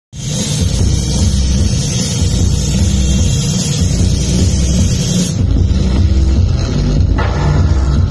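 A rock band playing loud, with heavy bass, drums and guitar; a bright hiss over the top cuts off about five seconds in while the heavy low end carries on.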